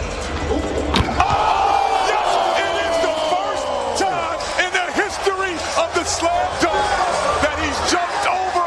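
A basketball dunk slams through the rim about a second in, followed by an arena crowd cheering and shouting, with long drawn-out yells over many overlapping voices.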